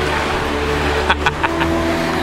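Car interior noise while driving: a steady low engine and road hum, with a few short clicks a little over a second in.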